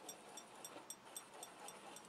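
Near silence, with only the faint rubbing of a glue stick being drawn along cardstock.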